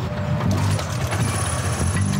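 Honda CT110 postie bike's small single-cylinder four-stroke engine being kick-started and running, the engine note steadying and getting louder about half a second in.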